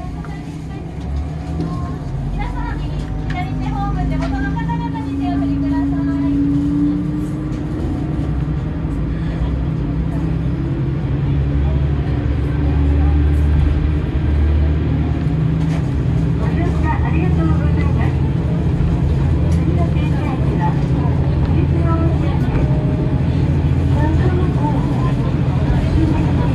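Diesel railcar engine running under load, its note rising over the first several seconds and growing louder as the train picks up speed, with voices talking over it.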